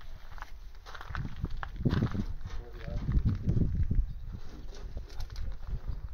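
Faint, indistinct voices over a low, uneven rumble.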